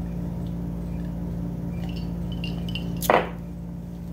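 A glass mason jar being drunk from and then set down on a table: a few faint clinks, then one sharp clink about three seconds in, over a steady low room hum.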